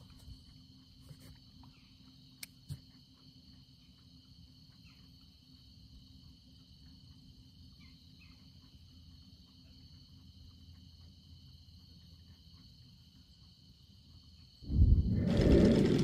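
Faint, steady trilling of crickets with a low rumble beneath and two sharp clicks about two and a half seconds in. Near the end a much louder rush of wind noise sets in.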